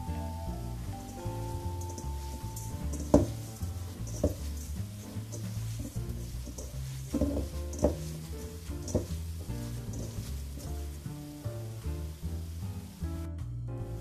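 Background music with a steady pulse, over which hands squish and knead ground meat in a stainless steel bowl, with scattered short wet clicks and one sharper click about three seconds in.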